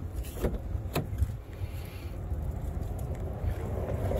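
Driver's door of a Dodge Journey being opened: two sharp clicks of the handle and latch, about half a second apart, over a steady low rumble of wind and traffic.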